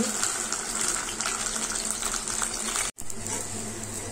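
Pancake frying in ghee in a pan: a steady sizzle with fine crackles. It breaks off for an instant about three seconds in, then carries on with a faint low hum under it.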